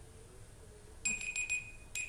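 Timer alarm going off about a second in with a high, pulsing ringing tone, signalling that the one-minute answering time is up.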